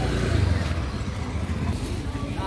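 Motor scooter engine running as it passes close by, loudest about half a second in and fading over the following second.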